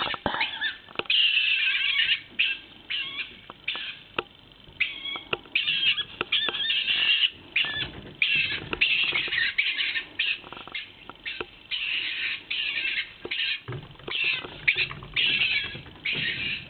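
Stone marten calling: a long series of high, screechy rasping calls in bursts, some short and some held for a second or two, broken by brief gaps.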